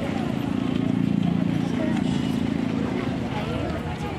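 Many children's voices talking over one another at close range, with a steady low hum underneath.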